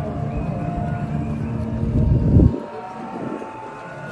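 Dinosaur-park soundtrack from outdoor loudspeakers: held music tones, with a deep rumbling dinosaur roar that swells to its loudest about two and a half seconds in and cuts off suddenly.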